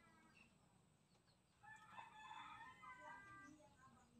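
A rooster crowing faintly once, a single call of about two seconds starting about a second and a half in, after a brief fainter call at the start.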